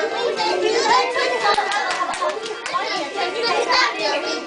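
Many young children's voices at once, a class of small children chattering and calling out together in a lively jumble.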